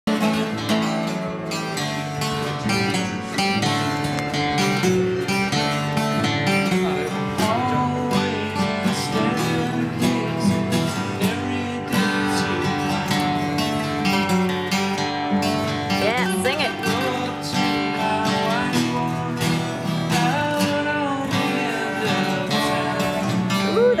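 Two acoustic guitars played together, strumming and picking chords in a steady flow of strokes.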